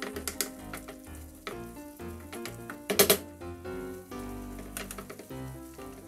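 A wooden spatula scraping and knocking against a frying pan while an onion and flour mixture sizzles, with a sharp knock about three seconds in. Background music plays throughout.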